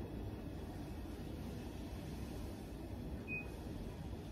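Quiet room tone: a steady low background hum with no distinct events, and a faint brief high blip about three seconds in.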